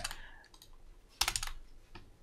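A quick run of several sharp clicks from computer keys or mouse buttons about a second in.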